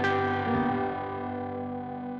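Electric guitar: a chord struck right at the start and left to ring, fading slowly.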